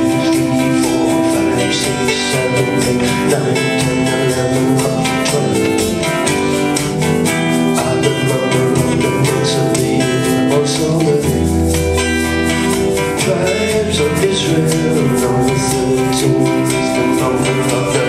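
Folk band playing live: acoustic guitar and keyboards with a held low bass note about halfway through.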